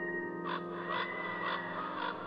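Ambient nature-music track: sustained synthesizer chords hold steady while an animal gives four short calls, evenly spaced about half a second apart.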